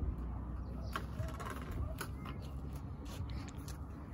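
PVC pipes and plastic fittings being handled and pushed together: a few light clicks and knocks, over a steady low rumble.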